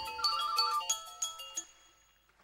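Soundtrack music: a short run of clear, chime-like synthesizer notes stepping in pitch, fading away by about a second and a half in.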